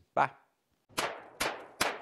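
Three gunshot sound effects, sharp cracks less than half a second apart, each with a short fading echo, forming an outro sting.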